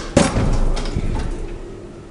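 KONE elevator giving a sudden loud bang, followed by about a second of rumbling and rattling that dies away.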